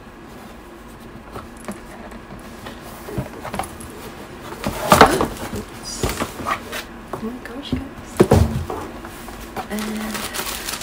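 A rigid cardboard box is handled and its lid lifted off, with paper rustling and scattered knocks. The loudest knock comes about five seconds in, and a dull thud a little after eight seconds.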